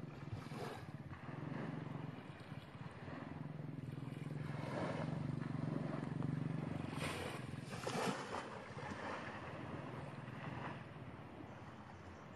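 Small waves washing on a sandy shore, with wind on the microphone, swelling a little louder about a third of the way in and again past the middle, over a low steady hum.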